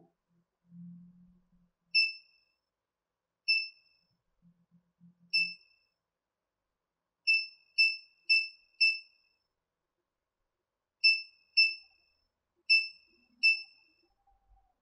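Small electronic buzzer on an Arduino breadboard giving short high beeps, eleven in all, some singly and some in quick runs of two to four. Each beep confirms that an output has been switched on or off from a WiFi app.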